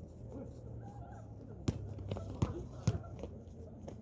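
A basketball bounced on an outdoor hard court: three loud thumps a little under halfway through, the last two close together.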